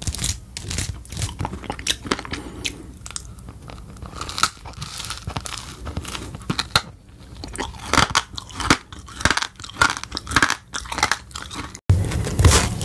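Hairbrush strokes swishing through hair, then repeated crisp bites and crunchy chewing of an edible hairbrush. The crunching is densest near the end.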